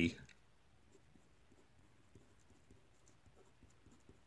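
Felt-tip marker writing letters: faint, scratchy little strokes of the tip across the surface as a word is written out.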